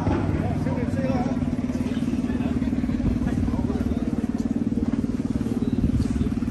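A scooter engine idling steadily, a fast even putter that holds at one pitch, under faint chatter.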